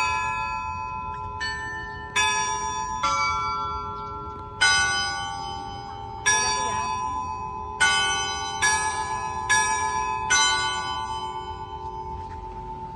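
Bronze church bells from the Antica Fonderia De Poli chiming a repique: about ten strikes at uneven intervals on bells of different pitches. Each strike is left ringing and overlaps the next, and the last, about ten seconds in, rings out slowly.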